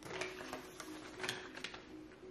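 Soft, scattered clicks and rustles of paper sandwich wrappers being handled while people eat, over faint background music of short, even notes.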